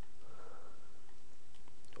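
Steady low hiss of the microphone and room noise, even in level, with no distinct event.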